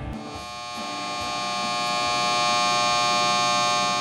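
A sustained, buzzy electronic tone, rich in overtones, that swells slowly in loudness and then holds steady.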